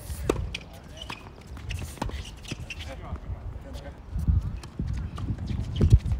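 Tennis ball struck by racquets and bouncing on a hard court: sharp pops a second or two apart, over a low rumble of wind on the microphone.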